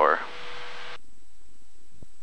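The end of a spoken exclamation over a light aircraft's cockpit intercom, followed by a hiss that cuts off sharply about a second in. Only faint low cabin noise remains after that.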